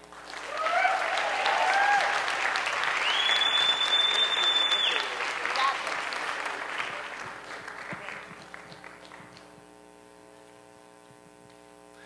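Theater audience applauding, with whoops and a long, high whistle a few seconds in. The applause dies away after about six seconds, leaving a faint steady hum.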